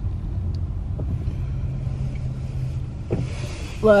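Low, steady rumble of a car heard from inside the cabin. A woman's voice starts right at the end.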